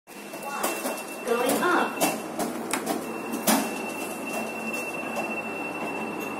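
Brief voices, then several sharp clicks and knocks as someone steps into an open lift car, over a steady high-pitched whine.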